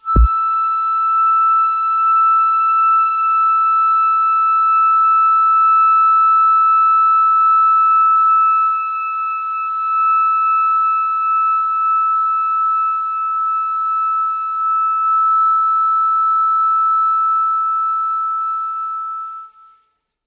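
Flute holding one long, steady high note, opened by a short low knock and fading out just before the end.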